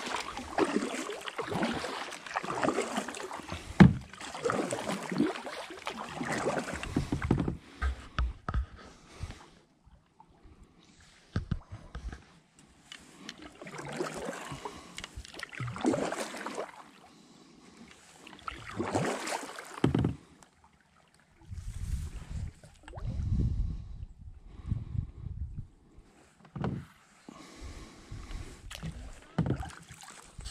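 Kayak paddle strokes splashing and dripping in calm water, about one stroke a second for the first seven or eight seconds, then a few spaced strokes with quieter gaps. Low rumbling comes and goes about two-thirds of the way through.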